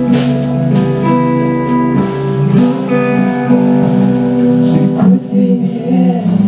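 A live band playing an instrumental passage on electric guitars, with held, ringing notes over a low bass line and a steady beat a little faster than once a second.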